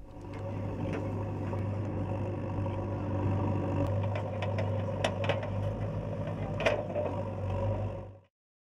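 Diesel engine of a backhoe loader running steadily while its arm digs into an earthen embankment, with a few sharp clanks from the bucket and arm.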